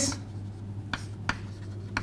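Chalk writing on a chalkboard: a few light taps and scratchy strokes, over a steady low hum.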